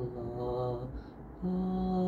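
A man singing unaccompanied, wordless held notes: a lower note through the first second, then after a brief pause a higher note held steady.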